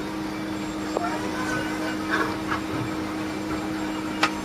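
Steady low machine hum, with a sharp clink from a small steel cup about a second in and light clinks and paper rustling as a dry snack mix is tipped into a paper cone.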